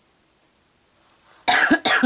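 A woman clearing her throat: two short, rough bursts about a second and a half in, after a quiet stretch.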